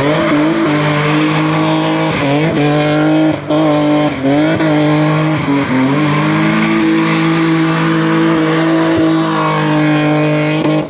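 BMW E30 M3 rally car engine at high revs through a hairpin, with repeated quick throttle lifts and stabs in the first half, then held steady and high while the car drifts, tyres squealing.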